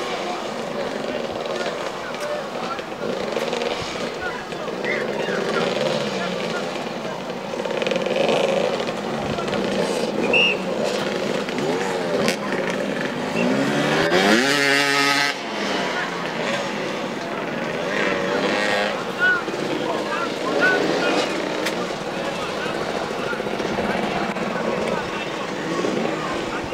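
Several motoball motorcycle engines idling and blipping at low speed. About fourteen seconds in, one engine revs up sharply in a rising whine.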